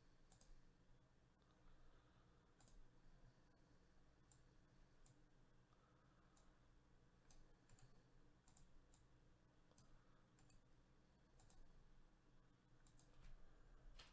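Near silence with faint, irregular computer mouse clicks, about one a second, over a low hum.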